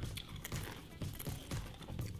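Soft crunching of a reduced-fat Pringles crisp being bitten and chewed: a few faint crunches about half a second apart. The crisps are dry and very crunchy.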